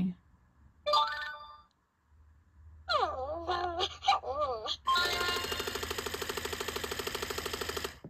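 WowWee Dog-E robot dog toy playing electronic game sounds through its speaker during its Ultimate Nose Boop game: a short chime about a second in, warbling synthetic glides around three to five seconds, then a fast, steady pulsing electronic ringing from about five seconds on.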